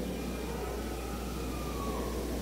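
Steady low electrical hum over background noise, with a faint thin tone sliding slowly down in pitch.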